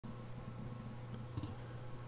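Quiet room tone with a steady low hum and a couple of brief faint clicks about one and a half seconds in.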